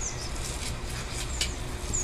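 A bird chirping: a few short, high, falling notes about one and a half seconds in and again at the end, over a low steady rumble.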